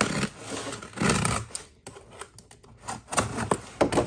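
Packing tape on a cardboard box being slit with a pointed tool and torn off, with cardboard scraping and rustling. There are a few bursts of tearing and scraping, and a run of small clicks and crackles in the middle.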